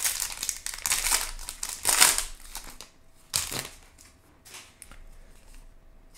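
Foil wrapper of a baseball card pack being torn open and crinkled, loudest about two seconds in. After about three seconds it drops to a sharp click and quieter rustles and ticks.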